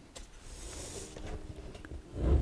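Faint handling of a clear plastic storage box as it is gripped and slid across a wooden tabletop: a soft scraping hiss about half a second in and a few light clicks.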